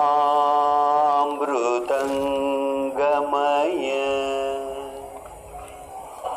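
A single voice chanting in long held notes, sliding in pitch between them, then fading near the end.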